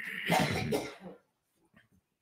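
A person coughing: one rough burst lasting about a second, then quiet.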